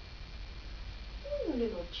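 Baby giving a short whiny cry that falls in pitch, a little past halfway through, then starting another cry just before the end.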